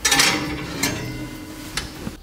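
Ceramic baking dish sliding onto a wire oven rack: a loud scrape and clatter at the start, then a couple of lighter knocks as it is pushed into place.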